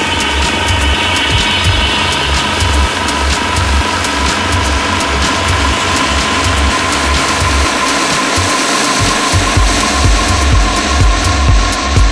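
Electronic dance track with a driving, evenly pulsing bass beat under a dense layer of synth noise and a held tone. The bass drops out for about a second near two-thirds of the way through, then comes back in.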